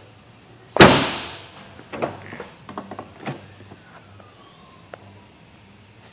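Rear liftgate of a 2010 Ford Explorer shutting with one loud slam about a second in, its ring dying away, followed by a few lighter clicks and knocks as the liftgate is handled.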